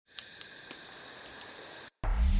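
Faint hiss with a handful of irregular sharp clicks and a thin steady high whine, cutting off abruptly near the end.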